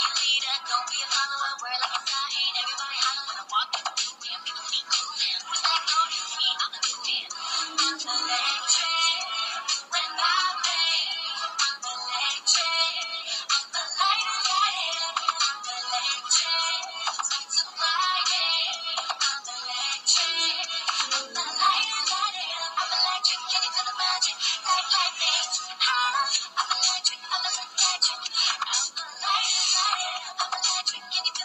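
Background song with a singing voice, thin-sounding with no bass.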